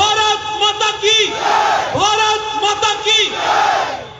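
Political rally slogan call-and-response: a man shouts a slogan into a PA microphone and a crowd shouts back. The exchange repeats about every two seconds.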